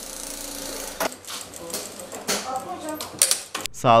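Industrial sewing machines running with a steady whir, with a few sharp clicks about one, two and three seconds in.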